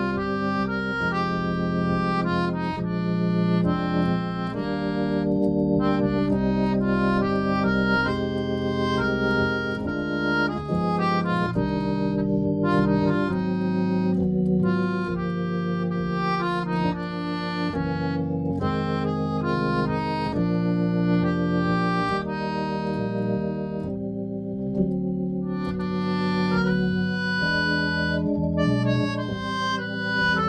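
Suzuki PRO-44H melodion (keyboard harmonica) playing the melody line over held chords from a Hammond SK Pro organ.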